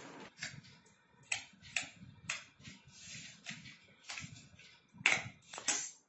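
Scissors cutting cardboard: a run of crisp, irregular snips about every half second, the loudest two near the end.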